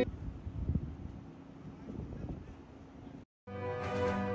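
Faint outdoor background noise with a low rumble, which cuts off abruptly a little over three seconds in. After a moment of silence, theme music starts near the end.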